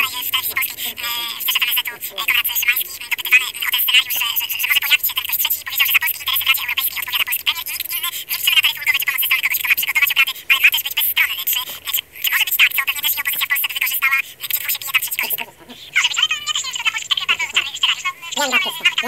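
Tinny, high-pitched talking with no clear words, with almost no low end to it, broken by a short pause about three-quarters of the way through.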